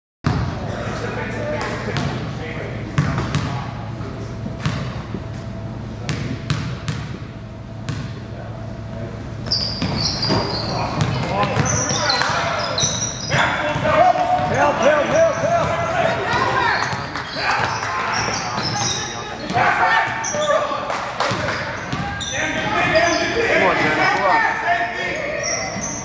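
A basketball dribbled on a hardwood gym floor, its bounces echoing in the hall. From about ten seconds in, short high sneaker squeaks and shouting voices join the bouncing as play moves up the court.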